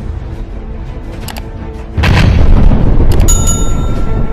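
Intro music with a sound-effect explosion about halfway through: a sudden deep boom that keeps rumbling. Near the end a high bell chime rings over it.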